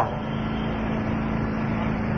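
Steady background hum and hiss with a constant low tone, unchanging throughout.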